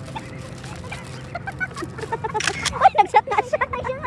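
Indistinct voices of people talking, louder and more animated in the second half, over a steady low background rumble.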